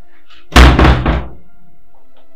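A wooden door being banged: one loud hit followed by two or three quicker knocks, all within about a second. Background music plays throughout.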